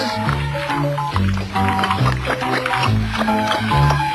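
Cartoon background music: a bass line stepping from note to note about twice a second under short, bright melody notes.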